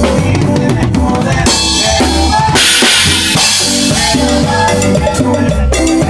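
Drum kit played live with a band: kick drum, snare and cymbals driving a fast beat over bass and keyboard, with a long cymbal crash near the middle.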